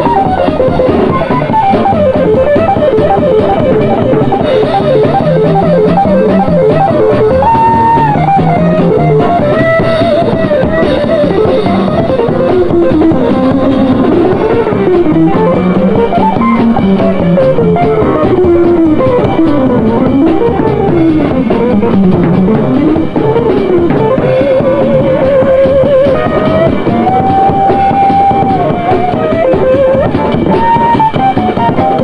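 Guitar playing a solo of quick runs that climb and fall, with a rapid trill near the end, over a drum kit keeping time.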